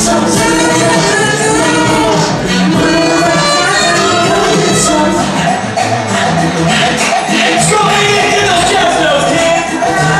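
Live jazz-funk fusion band playing, with keyboards.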